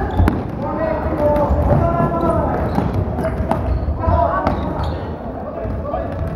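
Floorball game in play: players' voices calling out over sharp clicks of sticks and ball, with footsteps and thuds on the wooden hall floor.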